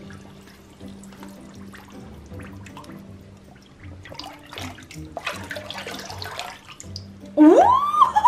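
Water sloshing and swishing in a plastic tub as a sneaker is pushed under and swirled through a floating spray-paint film for hydro dipping, heaviest about five to six and a half seconds in, over soft background music with a steady beat. Near the end a woman lets out a loud, rising "ooh" as the shoe comes up.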